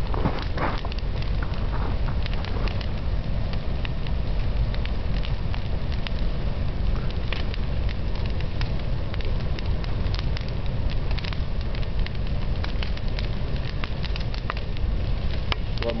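A whole couch burning in a large open fire: a steady rush of flames with frequent sharp crackles and pops throughout.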